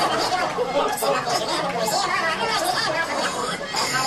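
Voices played backwards as a recording is rewound: garbled, speech-like chatter with no words that can be made out.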